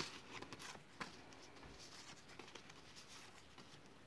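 Very faint rustling and light ticks of paper journaling cards being handled and leafed through, with a sharper tick at the start and another about a second in.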